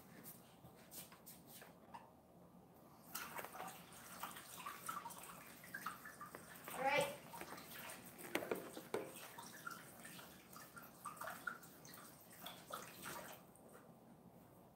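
Faint, distant running tap water as hands are washed, starting about three seconds in and stopping shortly before the end.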